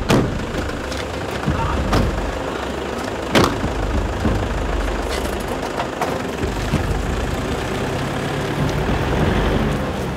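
Pickup truck engine running steadily, with several sharp knocks of car doors being slammed shut, the loudest about three and a half seconds in.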